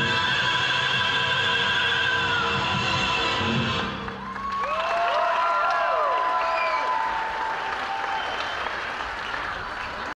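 Music ends on a long held chord with vibrato. About four seconds in, an audience breaks into applause with whooping cheers and whistles, which slowly die down.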